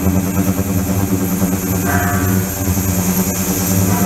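Ultrasonic tank running with submerged stainless-steel transducer boxes and water circulating through it: a steady electrical hum with a hiss over it, whose upper tone shifts about halfway through.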